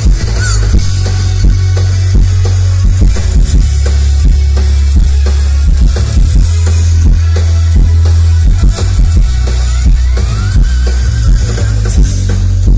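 Live band music played loudly through a stage PA: a driving drum-kit beat with heavy bass and electric guitar.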